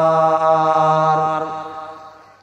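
A man's voice chanting Arabic, holding one long, steady note that fades away near the end.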